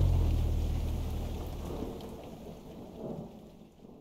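Recorded rain ambience fading steadily out at the end of a song, under a low bass note that dies away within the first two seconds.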